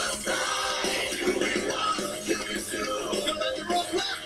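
A song with sung vocals over a steady backing track.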